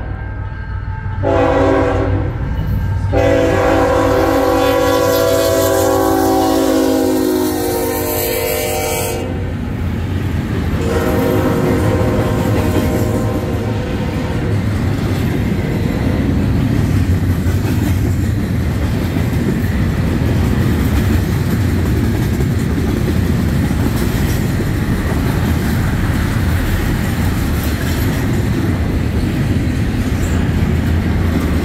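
A GE ET44AC locomotive's air horn sounds several blasts as the train approaches and passes: a short one, a long one of about six seconds, then another. After that, double-stack intermodal cars roll by with a steady rumble and wheel clickety-clack.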